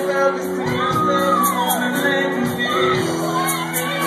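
Live band playing: held keyboard chords over drum hits, with a singer's wordless sliding vocal ad-libs and shouts over the sound system, heard in a large hall.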